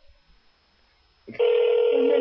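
Telephone ring tone on the line while a call is being transferred: a short pause, then a single loud steady ring starts about a second in.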